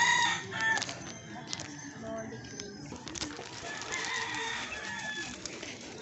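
Roosters crowing: one loud crow in the first second, then a fainter, more distant crow about four seconds in.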